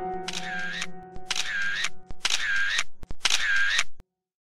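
Four short, identical pop-in sound effects, about one a second, with a couple of sharp clicks, over the held notes of a music track that fade out in the first two seconds. Everything cuts off abruptly at the end.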